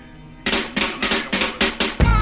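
Drum fill opening a song: after a short quiet start, a rapid run of drum hits about six a second begins about half a second in.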